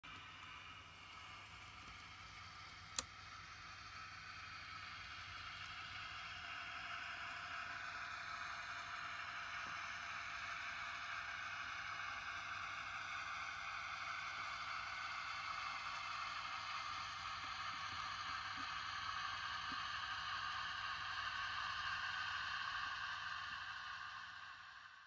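OO-gauge model diesel locomotives, a Class 08 shunter and a Class 55 Deltic, running along the layout: a steady mechanical running hum that slowly grows louder, then fades out at the very end. One sharp click about three seconds in.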